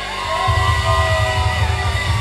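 A rock band playing live: sustained electric guitar notes gliding in pitch over a heavy bass line, with the low end swelling about half a second in.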